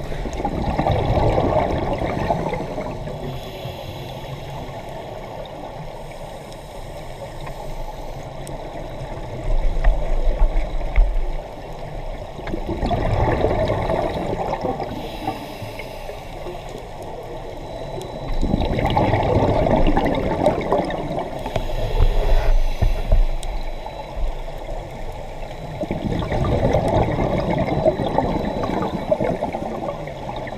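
Scuba regulator exhaust bubbles from the camera-holding diver's own breathing, heard underwater: a gurgling rush of bubbles about every six to seven seconds, with a quieter hiss in between. Low rumbles come near a third of the way in and again past two-thirds.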